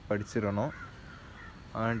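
Only a man's voice speaking, with a pause of about a second in the middle.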